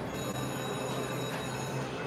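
Shadow of the Panther slot machine spinning its reels: electronic ringing tones over a steady low hum, the high tones fading out about a second and a half in.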